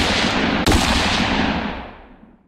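Gunshot sound effects: the ringing tail of one shot, then a second shot about two-thirds of a second in, its echo fading away near the end.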